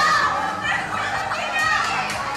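A group of young people shouting and squealing over one another while playing a game.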